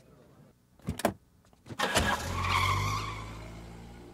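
Cartoon sound effect of a car arriving with a skid about halfway through, its engine noise fading away afterwards.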